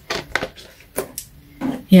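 A person drinking water: a few short gulps and swallowing clicks, with light knocks of the glass.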